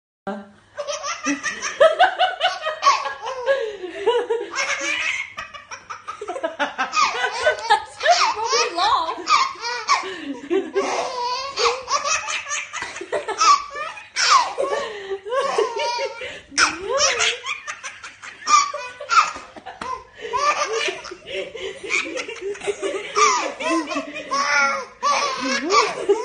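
A baby laughing hard in repeated bursts of high-pitched belly laughter, over and over.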